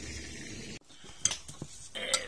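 A low steady hum that cuts off abruptly, then a few sharp clicks and light handling noise as corn-flour-coated fish are picked up off newspaper.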